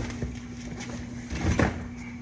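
Cardboard boxes being pushed and set down in a car's cargo area: a short thump at the start, then a louder, longer thud about a second and a half in.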